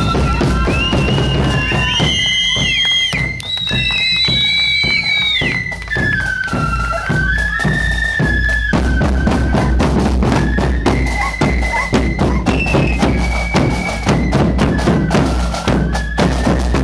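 Flute band on the march: many flutes playing a tune together over bass drums beating time. The flute melody is plainest in the first half, and after about nine seconds the drum beat carries more of the sound.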